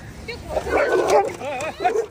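Street dogs crowding a food bowl break into a short, loud squabble of growls and barks about half a second in, followed by a run of high yelps near the end.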